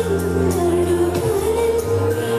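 Recorded Indian devotional song: a woman singing long held notes over a sustained instrumental accompaniment, played as the music for a dance.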